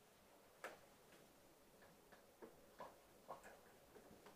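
Near silence: quiet room tone with about five faint, irregularly spaced soft clicks.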